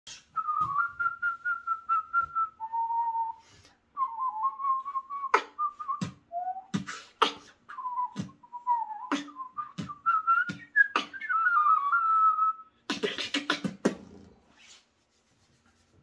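Beatboxing with a whistled melody, the beatbox 'recorder whistle', fluttering and gliding up and down in pitch over vocal kick drums and snares. Near the end the whistle stops and a quick run of noisy hissing percussion follows before it falls silent.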